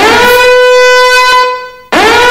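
Alarm horn sounding one long, loud, steady blast that swoops up in pitch at its start and cuts off abruptly near the end, with the next blast beginning right after: the alarm signalling that the escape room has been activated.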